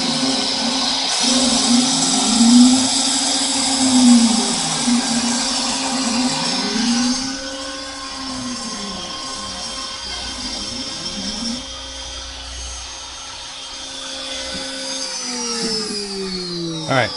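X-Carve CNC router spindle making a shallow, slow cut in acrylic. A steady high-pitched whine runs over a lower hum that wavers up and down in a regular pattern about every second and a half. It gets quieter about halfway through, and near the end the pitch starts falling as the spindle winds down.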